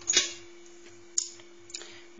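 Metal wire pot tongs knocking and clicking against the rim of a GM multicooker's inner pot as the pot is set down and the tongs are released: one louder knock at the start, then two light clicks. A faint steady hum runs underneath.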